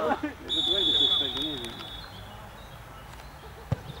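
A single long, steady whistle blast, typical of a referee's whistle, sounds for about a second and a half over men talking nearby. A sharp knock follows near the end.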